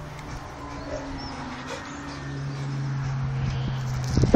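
A black Labrador whining low and steadily with a ball in its mouth, getting louder about halfway through.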